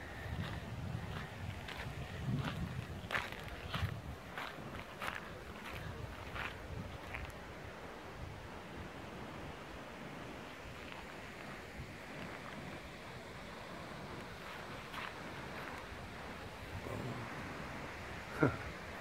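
Footsteps on gritty granite and dirt, irregular crunches for the first seven seconds or so, then fewer; under them a steady outdoor hiss of wind.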